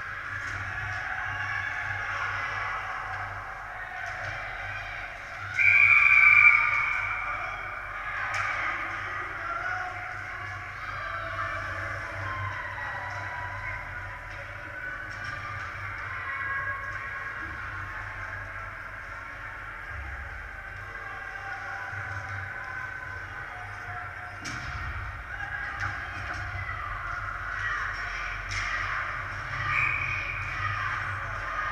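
Ice hockey rink ambience during play: echoing voices of players and spectators calling out, with one loud held call about six seconds in and a few sharp clacks of sticks or puck.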